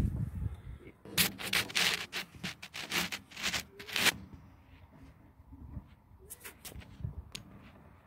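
Rubbing and scraping close to the microphone: about five rough strokes in quick succession in the first half, then a few faint clicks and rubs.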